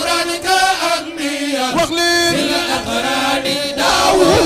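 Men chanting an Arabic religious poem (a Sufi qasida) into microphones, with long held, wavering notes.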